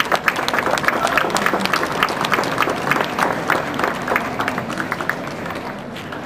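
Large audience applauding, many hands clapping, dying away near the end.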